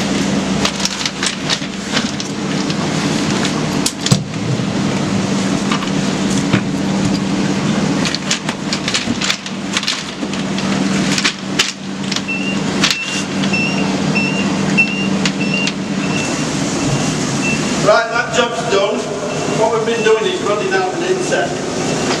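A worker's boots, harness and gear knocking and scraping against timber and rock as he crawls through a low opening in a mine inset, over a steady low machine hum. From about halfway through, a short high beep repeats about twice a second.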